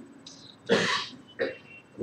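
A man clearing his throat: one short burst followed by a smaller one half a second later.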